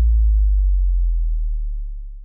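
Final held sub-bass note of a brega funk beat: a deep steady tone that slowly fades out as the track ends. Faint higher synth tones die away in the first half second.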